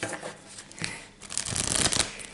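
A deck of tarot cards being shuffled by hand: a couple of short card snaps, then a louder rapid flutter of cards through the second half.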